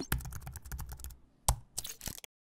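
Rapid run of clicking sound effects, like keyboard typing, from an animated graphic, with one louder click about a second and a half in and a few more near the end.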